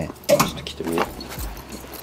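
Clothing rustling, with a few soft knocks and one low thud, as a leather shearling jacket is pulled off. A short spoken phrase falls in the middle.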